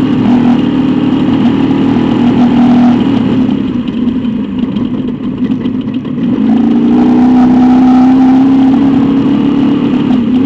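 Trophy truck's race engine heard from inside the cab at speed over rough dirt, with road and chassis noise. It eases off about three and a half seconds in, then comes back on throttle about six and a half seconds in and holds a steady note. The engine is held to about 60% throttle by a throttle cable problem.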